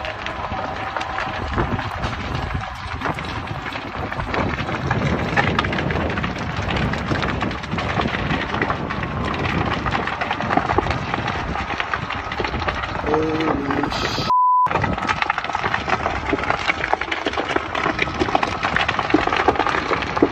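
Large fuel-tanker fire burning, a dense, steady crackling with scattered pops.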